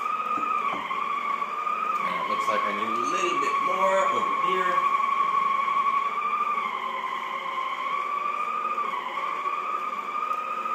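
Shark Sonic Duo hard-floor cleaner running with its polishing pad as it is pushed over a hardwood floor: a steady high motor whine that wavers slightly in pitch every few seconds.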